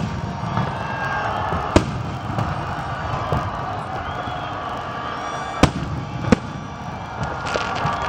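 Aerial fireworks shells bursting: one sharp bang about two seconds in, then two more close together around six seconds, over a steady background din.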